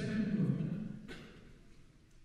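A man's voice in a reverberant hall for about the first second, then a short knock and a pause with only low room sound.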